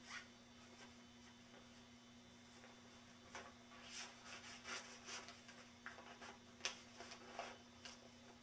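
Faint rustling and rubbing of handling over a steady low hum, thickening into scattered scrapes about halfway through, with one sharp tick past the two-thirds mark.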